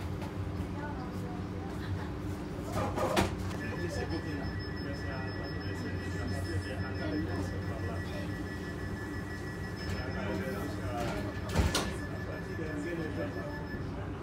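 Steady electrical and ventilation hum inside a stationary Transilien commuter train carriage, with a thin high whine that comes in a few seconds in and holds almost to the end. Two knocks, one about three seconds in and one near the end.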